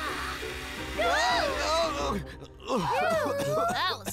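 Cartoon background music under a character's wordless vocal sounds: gliding groans and exclamations, one about a second in and another run near the end.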